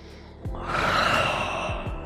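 A person's deep, audible breath, starting about half a second in and lasting over a second, during a reach-and-fold stretching movement. Soft background music plays underneath.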